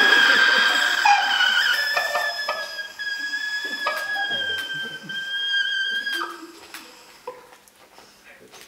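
A man's long, high-pitched dinosaur screech done with his voice. It wavers a little, weakens, and breaks off about six seconds in.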